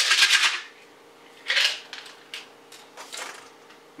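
Pills rattling in a plastic vitamin bottle as they are shaken out into a hand, loudest at the start, followed by a few short clicks and rattles of pill bottles and packets being handled.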